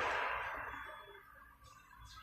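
Inside a SOR NB 18 City bus: a rushing noise that is loudest at the start and dies away over about a second and a half, over a low engine rumble.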